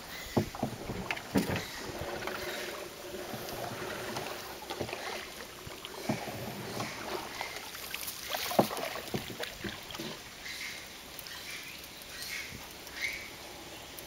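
Water sloshing and lapping around a small boat drifting on a creek, with scattered hollow knocks against the hull. The sharpest knock comes about two-thirds of the way through.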